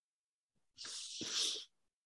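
A single short, noisy burst of breath from a person, starting a little under a second in, lasting about a second and loudest near its end.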